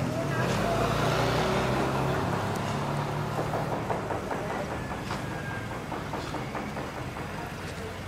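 A motor scooter's small engine running as it passes close by, loudest about a second in, then fading steadily as it moves away.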